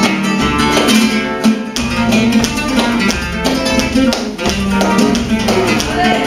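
Live flamenco music: an acoustic flamenco guitar playing plucked notes and quick strums in a driving rhythm.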